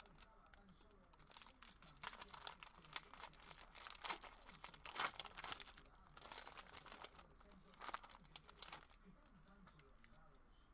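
Foil booster-pack wrapper being torn open and crinkled by hand, an irregular run of crackling that starts about a second in and dies away near the end.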